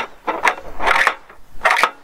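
3D-printed PLA plastic spice containers clacking and sliding into a printed plastic rack on a tabletop: about four sharp clacks, some with a short scrape.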